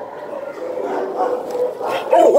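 Shelter dog whining in one long, wavering tone that grows a little louder toward the end.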